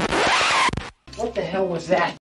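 The tail of a heavy-metal intro jingle: a loud, scratchy noise sweep that cuts off abruptly just before a second in. After a brief gap comes a short voice-like sound of about a second.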